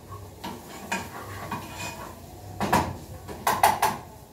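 Metal cookware clinking and knocking on the stovetop as the pans are handled and the sautéing grated carrots are stirred. A few light knocks come first, then two louder bursts of ringing metallic clanks in the second half.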